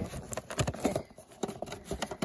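Hands handling a cardboard packaging box close to the microphone: an irregular string of rubs, scrapes and light knocks.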